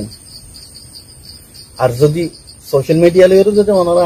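A man speaking in a low-pitched voice, silent for nearly two seconds, then talking again in two stretches. A thin, steady high-pitched hiss-like tone runs underneath.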